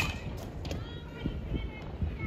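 A baseball bat hits a pitched ball once, a sharp crack right at the start, followed by faint voices in the background.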